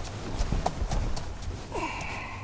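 Ram pickup's 5.7 Hemi V8 idling with a steady low hum, heard from inside the cab, with a quick run of five or so sharp clicks in the first second and a half.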